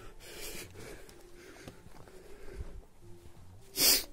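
A man breathing close to the microphone, ending near the end with one short, loud breath through the nose, a demonstration of deep breathing through the nose into the stomach.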